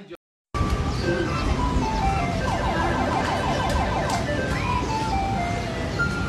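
A simple electronic jingle of short notes stepping downward, over a steady rumbling noise, starting abruptly after a brief silence.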